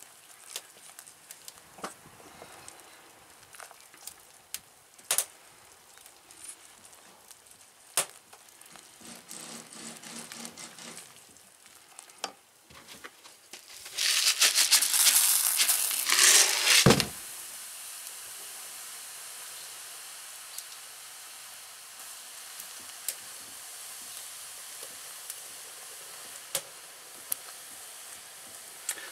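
Hot sodium silicate mix sizzling and crackling in a steel saucepan as silica gel beads dissolve in it, stirred with a wooden spoon. Scattered clicks and crackles at first, then a loud burst of sizzling about halfway through that settles into a steady hiss.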